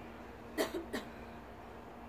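Two short, sharp huffs of breath from a person, about a third of a second apart, like forced exhalations or coughs during a dumbbell snatch.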